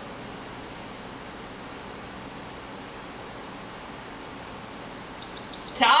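Steady background hiss, then near the end an interval timer sounds a few short, high beeps marking the end of the exercise interval.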